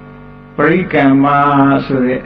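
A male Buddhist monk's voice in a level, drawn-out, chant-like recitation. It holds softly for the first half second, then comes in loud.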